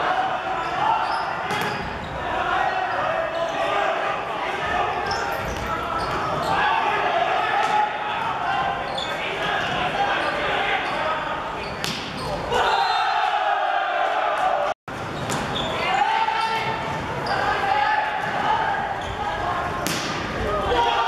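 Volleyball rally in a large gym: the ball struck in passes, sets and spikes with sharp smacks that echo through the hall, under players' shouts and calls.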